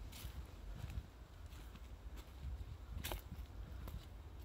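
Faint footsteps over a steady low rumble, with one sharp click about three seconds in.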